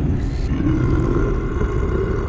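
Deep, rumbling roar from a film soundtrack. It is loud and heavy in the low end, comes in abruptly and holds steady.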